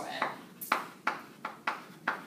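Chalk writing on a blackboard: a run of about five sharp taps and short strokes as letters are written.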